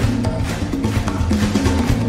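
Live band music: a busy, steady percussion groove of congas and drums over low, sustained bass notes.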